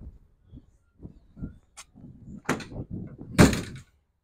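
Pickup truck tailgate being unlatched and lowered: a few faint knocks, a sharp latch click, then a clunk and a louder bang near the end as the tailgate drops open.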